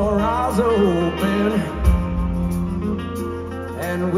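Live rock band playing a song through an arena PA, heard from the audience: electric guitars over a steady bass line, with a melodic line bending in pitch early on and the bass changing note about halfway through.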